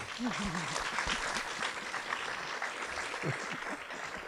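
Audience applauding, a steady patter of many hands clapping at once.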